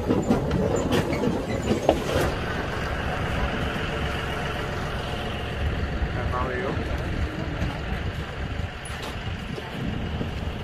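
Tractor running while it pulls a wooden passenger wagon, with a cluster of knocks and rattles in the first two seconds before it settles into a steady rumble.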